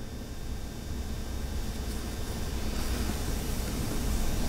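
Steady, low background room noise with a faint electrical hum, growing slightly louder near the end.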